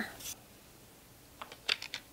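A quick run of four or five light, sharp clicks near the end: small scissors snipping a strip of false eyelashes shorter.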